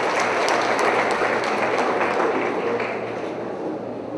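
Audience applauding: a dense patter of many hands clapping, easing off over the last second.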